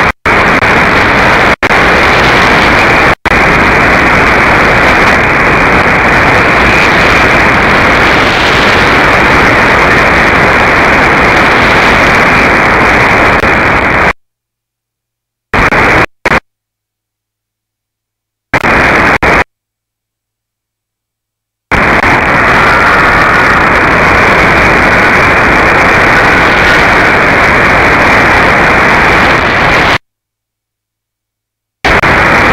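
Shortwave receiver in AM mode tuned to 9590 kHz, giving loud, even static and hiss with no programme audible yet, ahead of the station's scheduled broadcast. The noise cuts out to silence abruptly several times midway, then returns.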